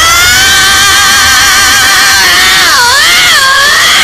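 Peacock-call horn sample, very loud: one long call that rises in pitch as it starts, holds with a slight waver, and dips down and back up in pitch about three seconds in.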